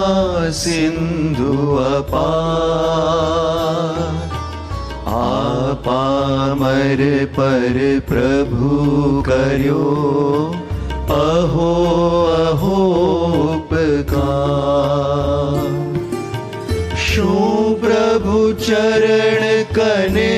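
Male voices singing a slow Jain devotional chant with long, wavering held notes. They are accompanied by a bamboo flute and a Korg Pa1000 arranger keyboard holding a steady low drone.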